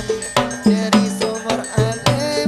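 Hadrah ensemble playing a percussion passage: frame drums and hand drums struck in a fast rhythm of about four strokes a second, each stroke leaving a short ringing, pitched drum tone.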